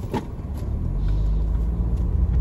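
Car engine and road rumble heard from inside the moving car's cabin: a low rumble that grows louder from about half a second in, with a short click at the start.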